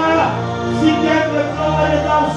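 Music with sustained chords over a held bass note; the bass shifts to a new note near the end.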